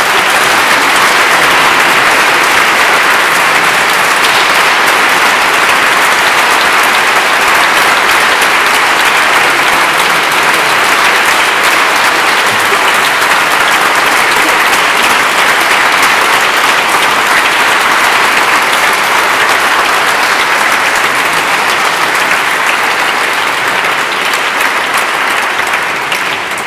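Audience applauding, a dense, steady clapping that eases slightly near the end.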